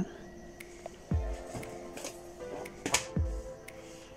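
Quiet background music with steady held notes, with a couple of soft thumps, about a second in and again near three seconds, as fabric pieces are handled on the table.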